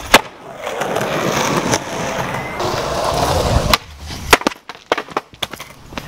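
Skateboard slamming down on concrete after a jump down a stair set, its wheels then rolling across the pavement for about three and a half seconds. It ends in a handful of sharp clacks as the board knocks and settles on the ground.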